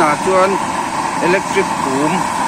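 Hair dryer running steadily, forcing air into a homemade waste-engine-oil burner stove, a constant whirring blow with the fire's rush behind it.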